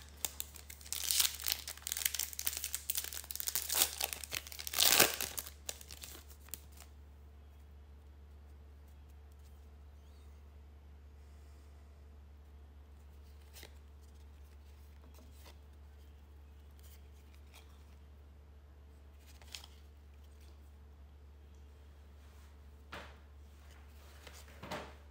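A trading-card pack's wrapper being torn open and crinkled for the first six seconds or so, loudest about five seconds in. After that, quiet room tone with a steady low hum and a few faint clicks.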